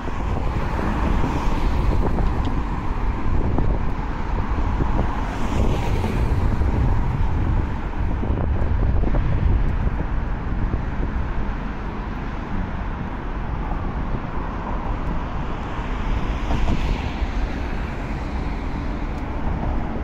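Road traffic on a bridge roadway running close by, with a low wind rumble on the microphone. It swells twice as vehicles pass.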